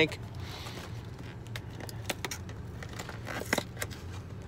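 Faint scattered clicks and light rustling from something being handled, over a steady low hum inside a car's cabin; the clicks are loudest near the end.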